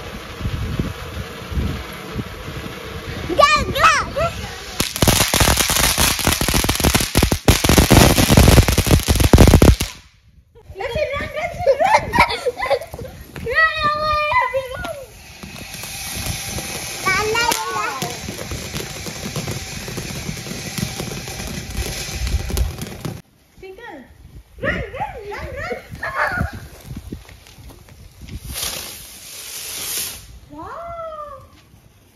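Firecrackers going off in a dense, rapid crackle lasting about five seconds, the loudest sound here; it stops abruptly about a third of the way in.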